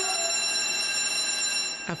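Electric school bell ringing steadily with an even, high ringing tone, cutting off abruptly near the end.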